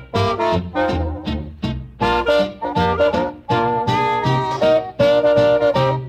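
Instrumental break of a 1942 band recording, with the melody played over a steady beat and no singing.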